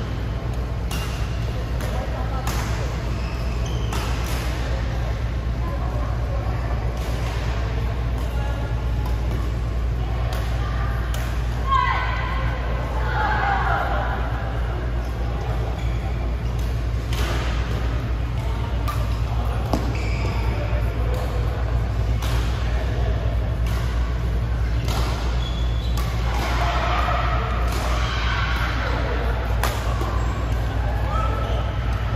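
Badminton rackets hitting a shuttlecock during a doubles rally, sharp hits at irregular intervals over a steady low hum. Players' voices come in about twelve seconds in and again near the end.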